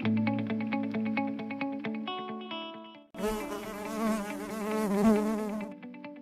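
Light plucked-string music with quick, even notes. About halfway through it gives way to a buzzing honeybee sound effect lasting about two and a half seconds, its pitch wavering up and down.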